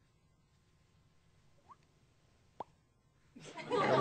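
Near silence broken by two short pitched plops, a faint rising one and then a sharper one about a second later, before a voice comes in near the end.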